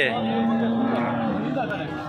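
A bull mooing: one long, low, steady call that fades out about a second and a half in.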